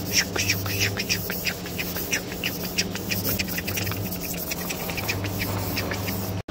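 A sanding pad rubbed quickly back and forth by hand over a dried, primed plastic car bumper, a rapid rasping of about five or six strokes a second: the primer being sanded smooth ready for painting. A steady low hum runs underneath.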